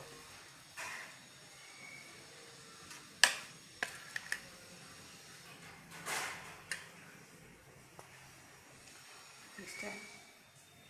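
Metal spoon stirring amla pickle in a stainless steel bowl, with a few sharp clinks of spoon against steel. The loudest clink comes about three seconds in, followed by several smaller ones, and there are brief scraping sounds.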